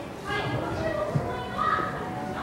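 Indistinct chatter of several people, children's voices among them, with no words clear.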